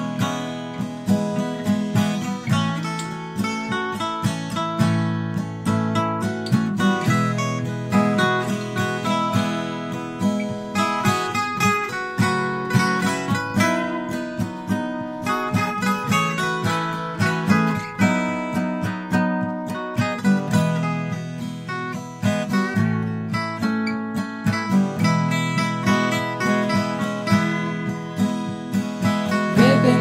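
Instrumental break in a gentle song: acoustic guitar playing a run of quick plucked notes over a steady lower accompaniment, with no singing.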